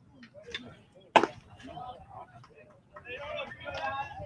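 A single sharp pop of a pitched baseball landing in the catcher's leather mitt, about a second in, on a pitch taken for a ball high.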